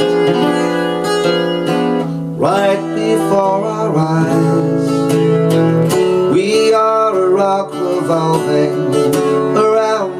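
Acoustic guitar played steadily, with a man's voice holding long notes that scoop up into pitch about two and a half seconds in and again about six and a half seconds in.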